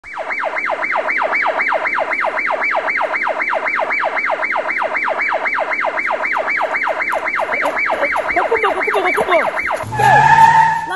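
Siren in a fast yelp pattern: a rapid, evenly repeated falling sweep, about three and a half cycles a second. The pattern turns uneven near the end.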